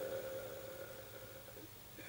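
A man's drawn-out hesitation sound, a held "euh", fading out within the first half second, then a pause with only faint steady room hum.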